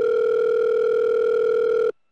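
Telephone call tone sound effect: one steady, single-pitched tone that lasts about two seconds and then cuts off.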